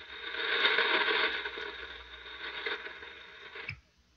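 Shortwave ham-radio receiver static, a radio-drama sound effect: a rushing hiss with faint steady tones under it. It swells about a second in, fades, and cuts off just before the end, with no reply coming through.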